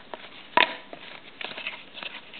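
Football trading cards handled and flipped through by hand, the cards sliding and tapping against each other. There is a sharp snap about half a second in and a few lighter clicks a little later.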